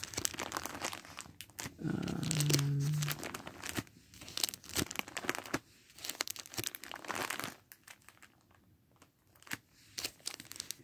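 Plastic disc cases being handled, with crinkling and sharp clicks, quieter for a couple of seconds near the end.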